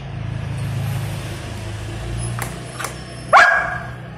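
Golden retriever puppy giving one short bark, rising in pitch, about three seconds in. It is a frustrated protest at being kept from its food bowl. A steady low rumble runs underneath, with two faint clicks just before the bark.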